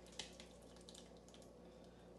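Near silence: room tone with a few faint soft ticks in the first second.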